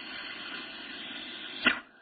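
A steady hissing whoosh lasting about a second and a half, ended by a short sharp burst of sound near the end.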